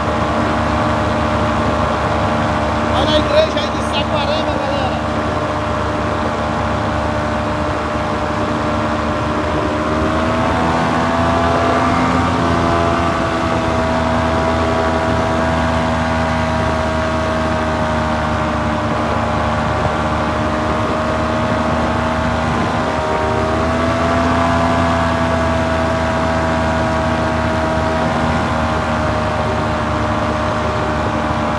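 Paramotor engine and propeller running steadily in flight, its pitch rising a little about ten seconds in and again near the middle as the throttle is opened. A brief sharp sound comes about three seconds in.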